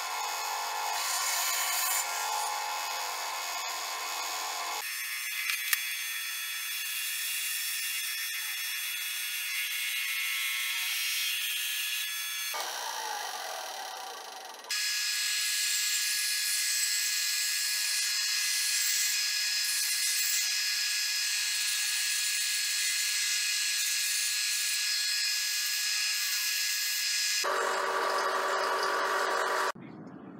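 A benchtop bandsaw running and cutting a small wooden piece, in several abruptly joined stretches. From about 15 seconds in, a combination belt and disc sander runs steadily while the piece's curve is rounded against the disc.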